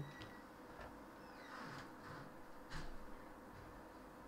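Quiet room tone with a few faint, short scratches and taps of a gel pen on paper.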